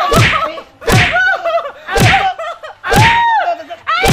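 Punch sound effects hitting about once a second, four strikes in all, each a sharp smack with a falling tail. A woman cries out between the blows.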